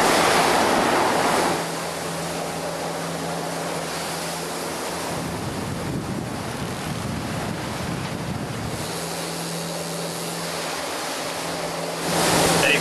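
Water rushing in the wake of a 64-foot Queenship motor yacht underway, with wind buffeting the microphone, louder for the first second or so. The yacht's diesel engines drone steadily underneath.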